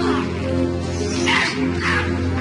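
Tense film score of steady, held synthesizer tones, with several short harsh rasping noises over it, the loudest about a second and a half in.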